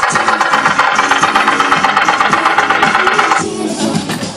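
A loud, rapidly pulsing mechanical rattling buzz starts suddenly and cuts off about three and a half seconds in, with music underneath.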